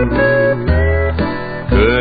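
A country band's instrumental fill between vocal lines of a 1950s recording: guitar over a bass note that comes back about once a second. It has the dull, narrow sound of an old transcription record.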